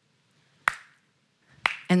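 Two short, sharp clicks about a second apart in a quiet pause, the first about two-thirds of a second in, the second near the end just before a woman's voice resumes.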